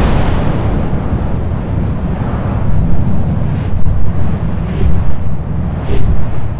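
A sound-effect explosion: a loud, sustained low rumble, with several sharper bursts from about halfway on.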